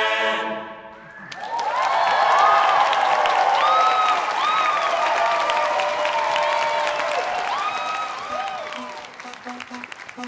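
A men's a cappella chorus's final held chord ends in the first half-second, then about a second later an audience breaks into loud applause and cheering that thins out near the end.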